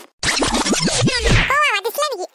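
A comedic record-scratch sound effect: a loud, rough, scraping burst of about a second and a half made of several quick downward sweeps. A high-pitched cartoon voice starts talking just after it.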